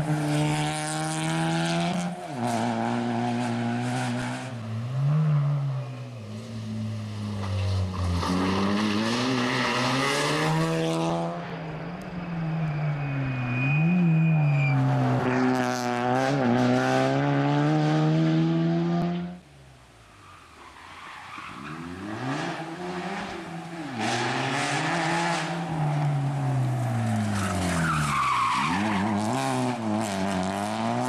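Suzuki Swift rally car's engine revving hard through the gears through a series of bends, its pitch climbing and dropping sharply with each shift and lift. About two-thirds of the way through the sound cuts away suddenly to a quieter stretch, then the engine builds up again as the car approaches.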